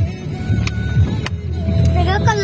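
Steady low rumble of a moving car heard from inside the cabin, with music playing over it and three short sharp clicks.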